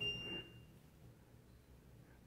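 Samsung top-load washing machine's control-panel buzzer giving one short, high beep as a button is pressed, then near silence.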